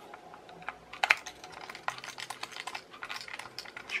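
A rapid, irregular run of small sharp clicks and taps, starting about a second in.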